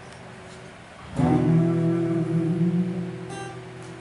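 Acoustic guitar: a single closing chord strummed about a second in, left to ring and slowly fade, ending the song.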